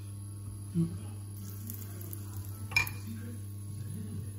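A drop of tempura batter sizzling faintly in shallow vegetable oil in a frying pan, the oil not yet hot enough to brown it, over a steady low hum. One sharp click comes near the end.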